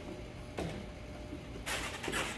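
A low steady hum, then, about one and a half seconds in, a burst of scratchy scuffing and rustling as a puppy's paws scramble up onto the textured top of a dog-training table.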